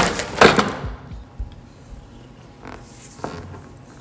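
A cardboard food box being handled on a table: a short rustle and knock in the first half second, then a quiet room with a few faint taps.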